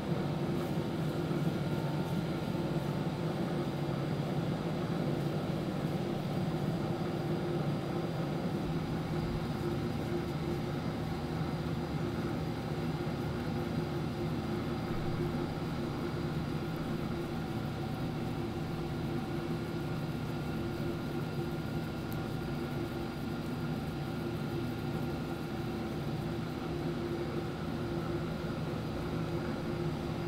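A steady machine hum with several held tones, unchanging in level throughout.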